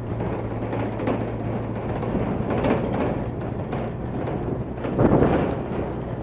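A vehicle running on a road, with a steady low engine hum under rough road noise that swells briefly about five seconds in.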